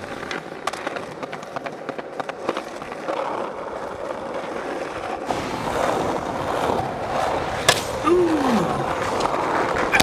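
Skateboard wheels rolling on pavement with scattered clicks of the board, a sharp crack of the board about three quarters of the way in, followed by a short tone sliding down in pitch.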